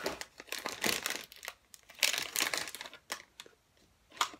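Close rustling and crinkling in uneven bursts with sharp clicks, louder in the first second and again about two seconds in: a phone being handled with its microphone rubbing against hair.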